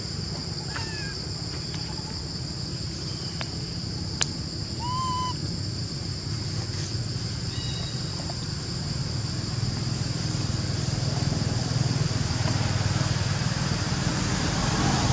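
Steady, high-pitched insect drone in two pitches throughout, with a few short chirping calls about one and five seconds in and a sharp click about four seconds in. A low rumble grows louder toward the end.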